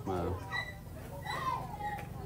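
A man's voice finishing a phrase at the very start, then fainter, higher-pitched voices in the background.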